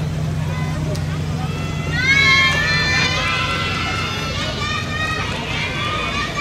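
High-pitched shouted voices calling out, long drawn-out calls that rise and fall in pitch, starting about two seconds in and coming again through the second half, over a steady low hum.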